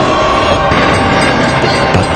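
Freight train rushing past at speed, loud and steady, with background music over it.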